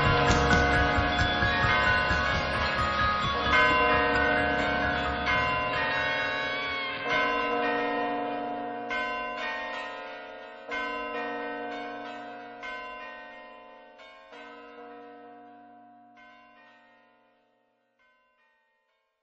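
The song's closing, with a sustained ringing chord of bell tones struck again every second or two. It fades away and dies out near the end.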